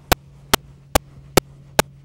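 Sharp clicks repeating very evenly, about two and a half a second, over a low steady hum.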